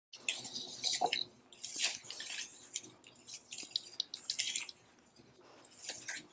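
Plant leaves rustling as a hand handles them, in irregular crisp bursts with small clicks.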